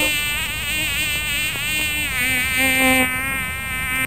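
A flying insect buzzing close to the microphone, one loud continuous drone that wavers up and down in pitch and stops abruptly at the end.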